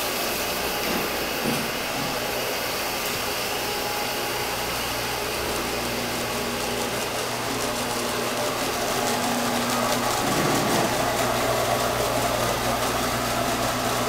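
An electric-driven grain mill and a Farmer Boy Ag flex auger running together, milling malt and carrying the grist up to the mash tun. It is a steady motor hum with a rush of grain, growing a little louder after about nine seconds.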